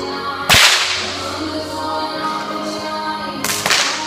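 Two bullwhip cracks from 6-foot bullwhips swung two-handed: a loud sharp crack about half a second in, and a second crack near the end, over music.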